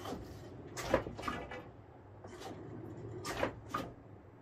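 Hand handling the plastic flush valve and hose at the bottom of a spin-down sediment filter: a few light clicks and knocks, a pair about a second in and another pair past three seconds.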